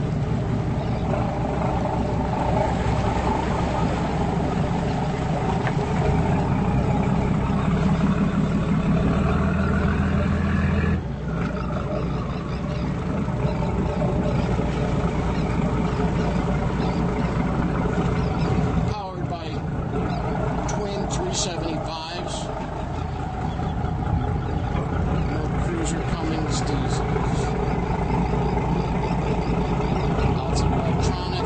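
Motorboat engines running steadily at low harbour speed, a low hum that steps down slightly about eleven seconds in.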